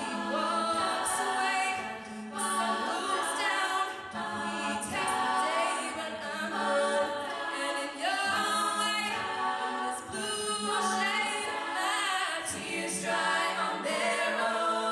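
All-female a cappella group singing live into microphones: several voices in close harmony, with no instruments.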